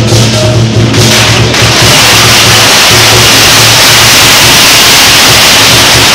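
Chinese dragon-dance percussion of drums, gongs and cymbals, played very loud and overloading the microphone. About two seconds in it thickens into a dense, continuous clash.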